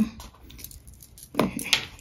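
Desk handling noises: paper rustling and light clicks as the instruction leaflet is put aside and the fountain pen parts are picked up, with a louder rustle about one and a half seconds in.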